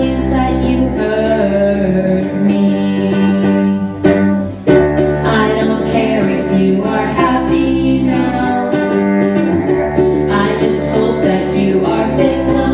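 Live acoustic band music: a bowed cello holding sustained notes over a strummed ukulele, with a brief drop in loudness a little past four seconds in.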